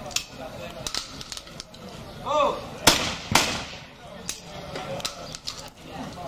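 A trap shooter's short shouted call for the clay, then two shotgun shots about half a second apart, the first the loudest.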